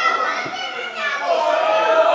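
Voices shouting and chattering, with a loud high-pitched call at the start and another drawn-out call near the end.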